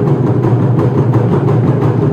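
Taiko ensemble of barrel drums struck with wooden bachi sticks, many fast strikes running together into a loud, continuous low rumble.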